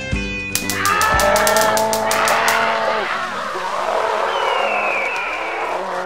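Handheld stun gun crackling in a rapid run of sharp clicks for about two seconds while a man yells, right after the music cuts off; a noisy wash with a falling squeal follows near the end.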